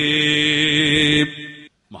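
A man's voice chanting, holding one long note at a steady pitch. The note cuts off a little over a second in and is followed by a brief pause.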